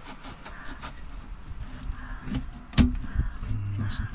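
Small clicks and knocks of a knife and a mango being handled on a chopping board, with one sharp knock about three seconds in.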